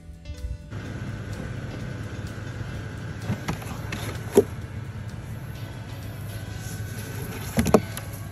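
Steady low rumble, starting just under a second in, with a few short knocks scattered through it, one near the end.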